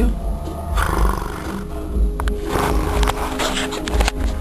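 A cat purring close to the microphone, a low pulsing rumble, with music playing.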